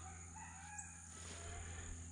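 A rooster crowing faintly over a steady high-pitched insect drone.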